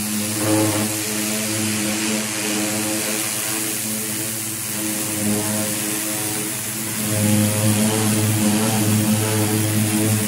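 Pressure washer running: a steady droning pump with the hiss of the water jet blasting chemically softened paint off a car hood. It gets louder for the last few seconds.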